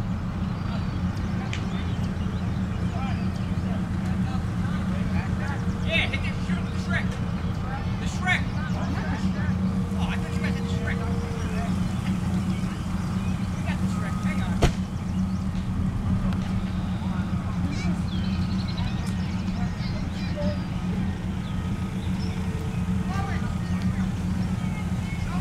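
M4 Sherman tank's engine idling with a steady low rumble, with one sharp bang a little past halfway through.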